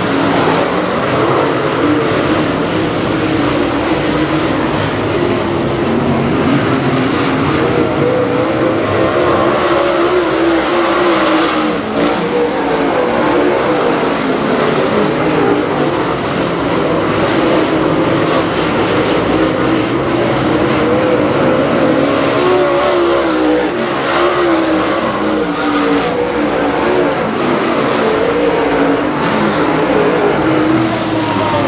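A pack of dirt late model race cars' V8 engines running hard at racing speed, loud and continuous. Their pitch rises and falls as the cars accelerate down the straights and lift into the turns.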